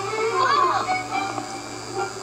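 Cartoon soundtrack played through laptop speakers: a child's voice with a quick high squeal about half a second in.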